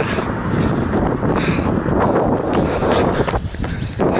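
Wind buffeting the microphone of a handheld camera carried by a runner heading into a headwind: a steady, fairly loud rush that eases briefly near the end.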